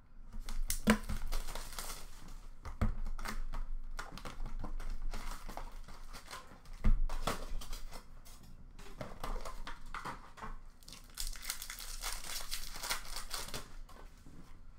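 A box of Upper Deck Trilogy hockey cards being opened by hand: packaging is torn and crumpled in uneven bursts, with a few sharp knocks from handling the box.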